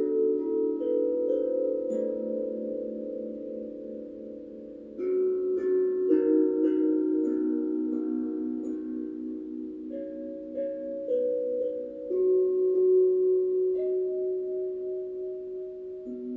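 Metal singing bowls struck with a mallet one after another, a new one every few seconds. Their low tones ring on and overlap with a slow wavering beat.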